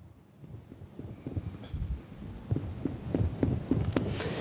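Finger-on-finger chest percussion: a quick run of soft, dull taps of fingertips striking a finger laid flat on the left lower chest, about four or five a second, growing louder after the first second. The note expected over this area is tympanic.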